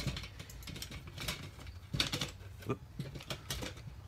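Irregular light clicks and taps of small objects being handled, with a sharper knock about two seconds in.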